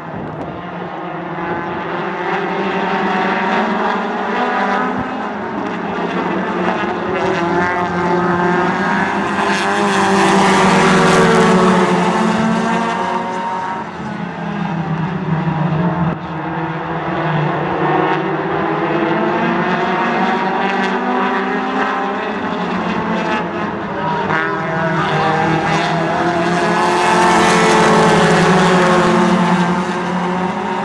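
A pack of tuner-class race cars racing around a short oval, their engines running together as one loud, unbroken sound. It swells as the pack passes close about ten seconds in and again near the end, and eases off in between.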